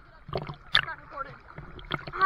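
Lake water lapping and splashing around a waterproof action camera at the surface, with a few short splashes and faint distant voices.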